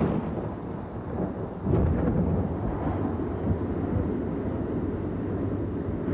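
Deep rolling rumble like thunder, swelling at the start and louder again about two seconds in, used as a sound effect in a TV commercial.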